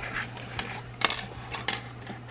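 A few short hard clicks and taps as small die-cast toy vehicles and little plastic accessories are handled and set down on a tabletop. The sharpest click comes about halfway through.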